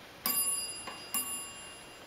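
ThyssenKrupp freight elevator's arrival bell striking twice, about a second apart. Each strike is a bright metallic ding that rings on and fades. The bell is working.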